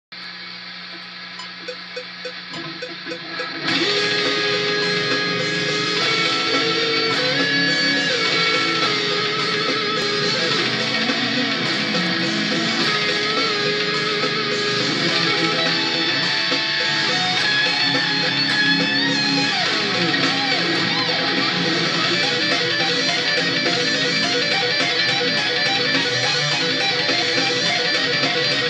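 Electric guitar playing a fast lead solo of picked runs with string bends. It starts with a few quieter notes, then comes in loud about four seconds in and keeps going.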